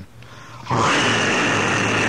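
A man's voice making one long, steady roar in imitation of a fire-breathing dragon, starting under a second in.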